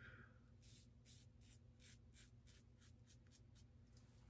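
Very faint scraping of a Timeless Titanium open-comb safety razor through lathered stubble, a quick series of short strokes at about four a second.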